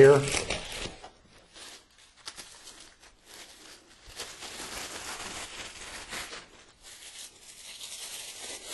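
Plastic wrapping crinkling and rustling in uneven bursts as it is pulled off a spotting scope. It grows busier after the first few seconds, with short pauses between handlings.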